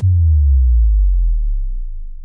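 A low synthesized tone gliding steadily down in pitch and fading out, the closing downward sweep of an electronic intro track.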